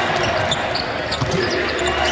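Basketball being dribbled on a hardwood court, bouncing at an uneven pace over steady arena background noise.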